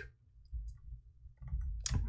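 Faint clicks of a computer mouse stepping to the next move on screen: a few soft ticks over a low steady hum of room tone.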